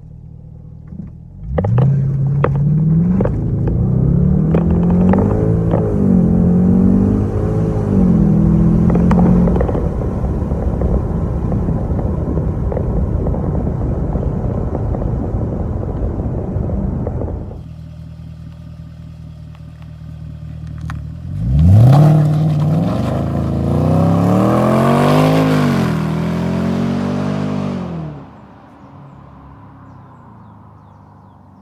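Jaguar XFR's supercharged V8 accelerating hard with traction control off, heard from inside the cabin: it revs up sharply about a second and a half in and climbs through several quick upshifts, then holds a steady loud drone at speed. After a sudden drop in level, a second hard acceleration rises and falls again before cutting off near the end.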